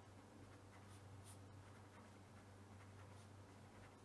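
Faint scratching of a felt-tip pen writing a word on paper, in short strokes, over a steady low hum.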